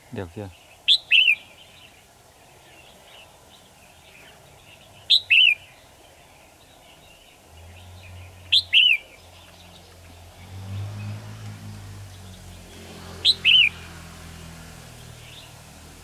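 Red-whiskered bulbul giving a loud, quick two-note call, each note falling in pitch, four times at roughly four-second intervals. A low motorbike engine hum comes in during the second half.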